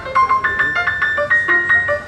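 Yamaha grand piano played live: a quick single-note melody high on the keyboard, about five or six notes a second, over a few lower notes.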